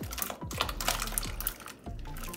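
Diced raw potatoes sliding from a glass bowl and dropping into a pot of boiling water: a quick, irregular run of small plops, splashes and clicks as the cubes hit the water and the pot.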